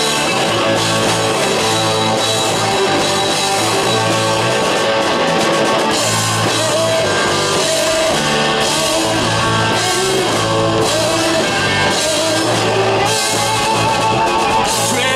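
Rock band playing electric guitars, bass guitar and a drum kit, steady and loud throughout.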